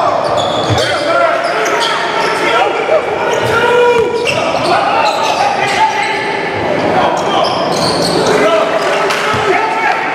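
Live game sound in a gym: a basketball bouncing on the hardwood floor amid players' and spectators' voices, echoing in the large hall.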